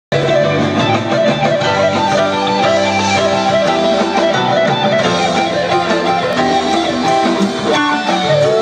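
Live rock band playing an instrumental passage led by electric guitar, with keyboards, bass and drums, recorded from within the audience.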